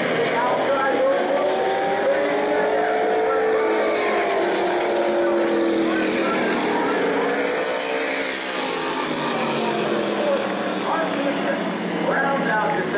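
Modified stock car race engines running at speed around the oval as the cars take the checkered flag. Their pitch glides up and falls away as the cars pass, most clearly about halfway through.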